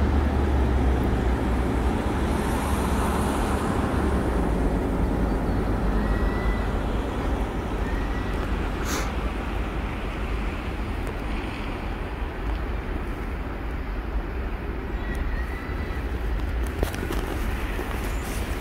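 Steady low vehicle rumble that eases off slightly as it goes on. There is one sharp click about nine seconds in and a few more clicks near the end.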